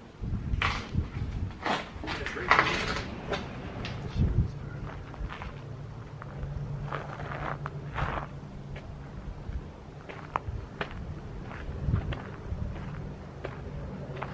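Footsteps and knocks on the floor of an abandoned passenger rail car, sharpest in the first few seconds, with a low steady hum underneath.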